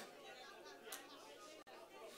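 Near silence: faint room tone with a faint murmur of voices.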